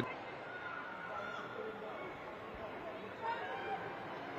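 Pitch-side sound of a football match in a near-empty stadium: faint, distant calls and shouts of players on the pitch over a steady background, a little louder just after three seconds.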